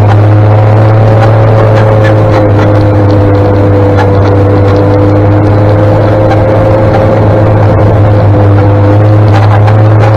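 Daimler Ferret armoured scout car's Rolls-Royce straight-six petrol engine and drivetrain running steadily while it drives slowly, heard from on board: a loud, deep, even drone with a steady whine over it.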